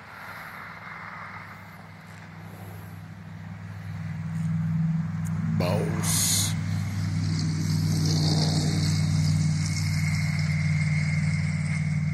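A motor vehicle's engine running with a steady low hum that grows louder about four seconds in and then holds. A brief sharp noise about halfway through.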